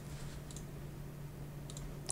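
A few faint clicks over quiet room tone with a steady low hum.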